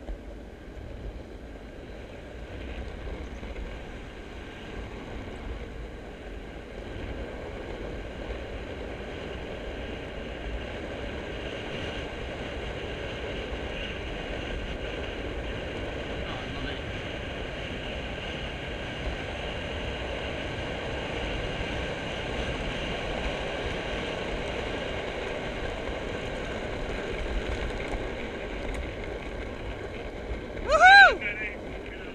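Skateboard wheels rolling fast down rough asphalt, with wind rushing over the microphone: a steady roar that grows louder over the first several seconds and then holds.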